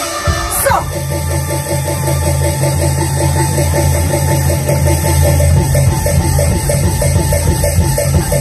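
Taiwanese opera stage music accompanying a martial scene: a fast, evenly repeated instrumental figure over a steady bass line, with a drum kit. A short falling slide comes less than a second in.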